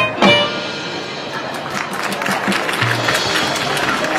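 Marching band music: two sharp accented hits right at the start, then a quieter, busier passage with many quick ticks and short low notes.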